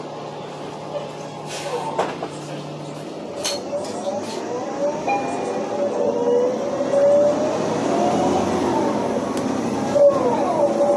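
City bus heard from inside, pulling away and gathering speed, its engine and drivetrain whine rising and getting louder from about four seconds in. A few sharp clinks or rattles come around two and three and a half seconds in.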